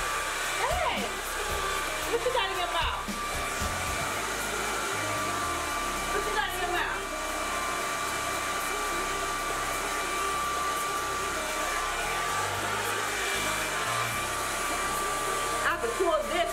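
Handheld hair dryer running steadily at close range, a constant rush of air with a steady high whine.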